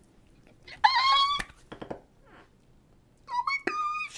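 American alligator hatchling calling: two high-pitched, steady calls, one about a second in lasting about half a second and another starting near the end.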